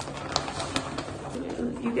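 Cardboard collectible boxes and packaging being handled: a few light sharp clicks and taps over soft rustling.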